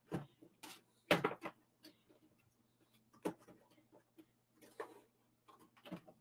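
Cardboard action-figure window box with a plastic tray inside being handled and opened: a few scattered taps, scrapes and rustles, the loudest cluster about a second in.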